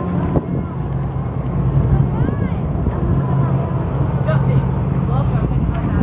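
A steady low rumble with faint voices in the background.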